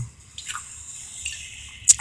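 A man drinking from a plastic bottle: faint sips and swallows, with a sharp click near the end.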